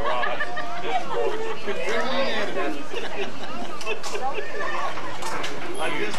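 Several people talking over one another: indistinct, overlapping conversation.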